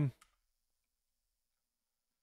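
The tail of a man's spoken word, a faint short click, then near silence for the rest of the time.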